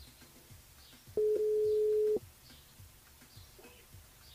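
Telephone ringback tone on an outgoing call: a single steady ring at one pitch, about a second long, starting about a second in. The called line is ringing and has not yet been answered.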